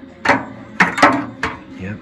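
Four sharp wooden knocks and clacks, the loudest about a second in, from handling the wooden cylinder-storage compartment of an old Edison Ediphone dictating machine.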